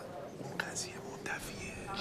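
Faint murmured, whisper-like voice over quiet room tone.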